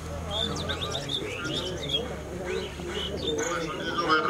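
Birds chirping in short, quick sweeping notes, with cooing underneath.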